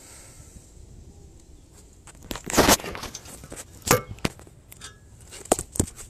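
Handling noise close to the microphone. A loud scraping rustle comes about two and a half seconds in, then a few sharp knocks, as something falls.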